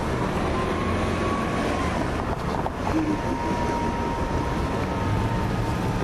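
Steady outdoor traffic noise: a low rumble with a faint, thin, steady whine running through most of it.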